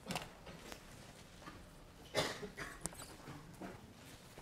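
Faint, scattered rustles and light knocks of people moving in a quiet lecture room, the loudest about two seconds in, with a sharp click just after it.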